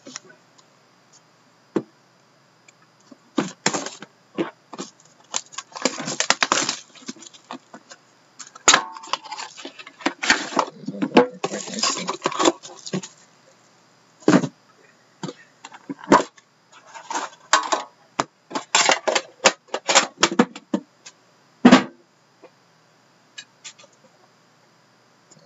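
Packaging of a sealed hockey-card box being handled and opened: irregular crinkling, rustling and sharp clicks in short bursts with quiet gaps between.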